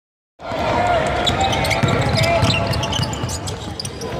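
Basketball game noise on a hardwood court: the ball thumping as it is dribbled, sneakers squeaking in short high chirps, and players' voices calling out. It starts about half a second in after silence.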